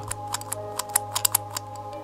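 A quick run of small plastic clicks from the lever mechanism of a 2015 McDonald's Pokémon Wobbuffet Happy Meal toy as its back lever is worked, moving the mouth and arm. Soft background music runs underneath.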